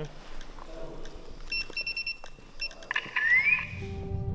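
A rapid run of short, high-pitched electronic beeps about halfway through, followed near the end by a brief rising tone.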